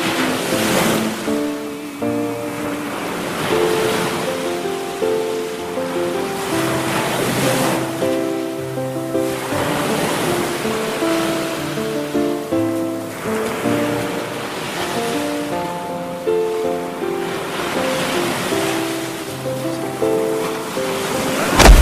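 Ocean surf washing in and out, swelling every few seconds, under slow instrumental background music of long held notes over a bass line.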